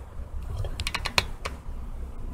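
A short run of light, sharp clicks and taps close to the microphone, bunched together about half a second to a second and a half in, over a low steady hum.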